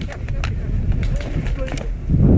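Handling and movement noise from a player on the move: a low rumble of wind and rustle on the helmet-camera microphone, with about six sharp clicks scattered through it.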